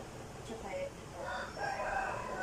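A rooster crowing: one long call that starts just over a second in and is still going at the end.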